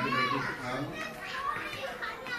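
Voices: a man speaking into a microphone over a hall's public-address system, with the chatter of a crowd behind him.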